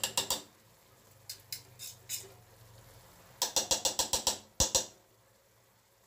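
A spoon knocking against the rim of a stainless-steel pot to shake off a dollop of smen (Moroccan aged butter). There are a few taps at the start and some scattered taps, then a fast run of about ten taps a little past the middle and two sharper knocks just after.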